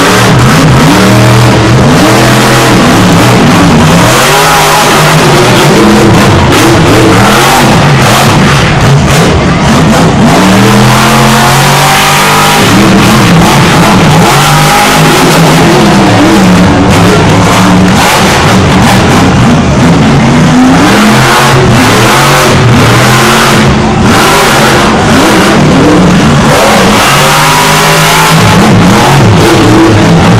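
Monster truck engine revving hard and dropping back again and again, very loud throughout.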